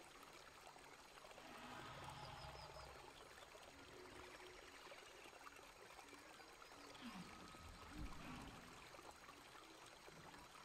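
Near silence, with only faint, indistinct background sound and a soft low thump about eight seconds in.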